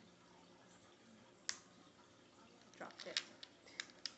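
Small, sharp plastic clicks from a Nintendo DS Lite being handled: one click about a second and a half in, then several quick clicks close together near the end.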